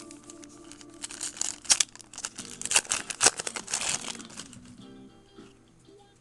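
Foil trading-card pack wrapper crinkling and being torn open. A burst of sharp crackles runs from about one to four seconds in.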